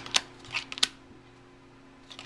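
Playing cards flicking and snapping as they are handled one by one, three short sharp snaps in the first second, then only a faint steady hum.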